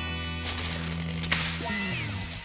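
Cartoon sound effect of a small electronic ring chip shorting out from fruit juice: two crackling, sizzling bursts over a low sustained musical chord, with a falling power-down tone near the end.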